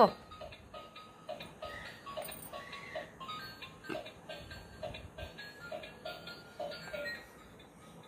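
Battery-operated light-up toy playing a simple electronic tune of short beeping notes, about three a second, which stops about seven seconds in.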